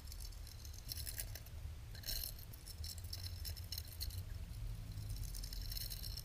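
Water heard through an underwater camera: a low steady rumble with faint crackling and clicking in patches, loudest about a second in and again about two seconds in.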